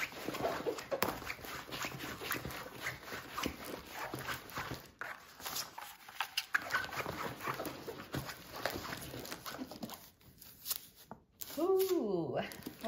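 A plastic-covered diamond painting canvas being rolled up backwards by hand: a run of crinkling rustles and small clicks, easing off briefly near the end.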